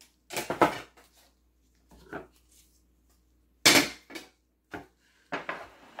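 Dishes and a plastic container being handled on a kitchen counter: a series of short knocks and rustles, the loudest a little before four seconds in.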